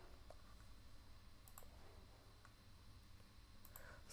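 Near silence: quiet room tone with a few faint, short clicks of a computer mouse.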